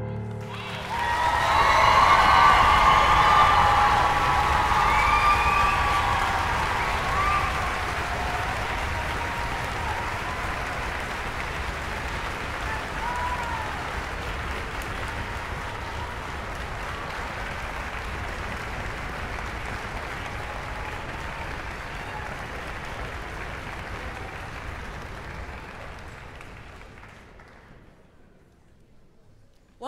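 Audience applauding, with whoops and cheers in the first few seconds, then steady clapping that slowly dies away near the end.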